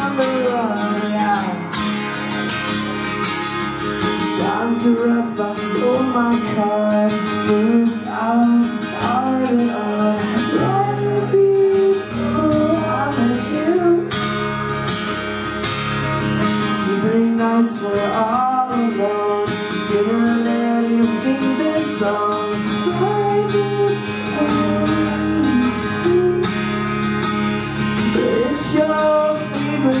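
Live band music: a guitar strummed steadily, with a melody line moving over the chords.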